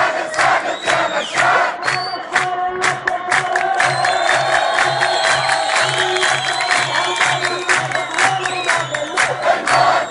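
A large crowd of demonstrators chanting in unison, with steady rhythmic clapping of about three claps a second.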